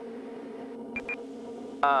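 Steady cockpit drone of a Quest Kodiak 100's PT6A turboprop engine and propeller in flight. Two short electronic beeps come about a second in.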